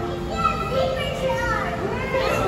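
A young child's voice calling out 'a zipper shark', over background music with steady held notes.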